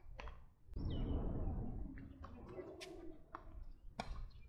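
A few short, sharp taps of a tennis ball bouncing and being struck on a hard court, over a low rumble of wind on the microphone. A bird calls in the background.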